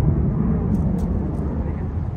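Fokker 100 jet airliner climbing out after take-off, heard from the ground: the steady low rumble of its two rear-mounted Rolls-Royce Tay turbofans.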